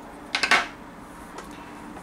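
Metal scissors clicking: a quick cluster of three or so sharp metallic clicks about a third of a second in, then one faint click later.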